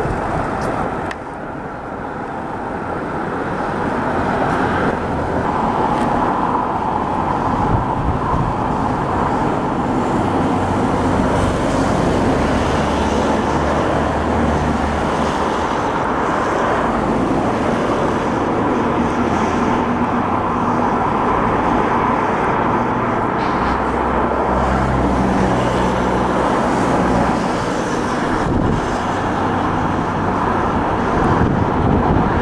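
Class 60 diesel locomotive hauling a freight train as it approaches, its engine sound growing louder over the first few seconds and then holding steady, with the low engine note rising and falling in steps.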